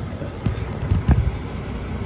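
Steady low vehicle rumble, with a few short knocks of the phone being handled about half a second and a second in.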